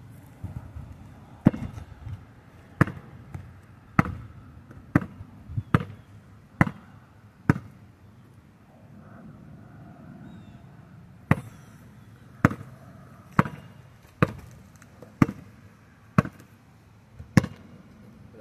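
A basketball bouncing on packed dirt and gravel, dribbled about once a second. There are two runs of about seven bounces, with a pause of roughly three seconds in the middle.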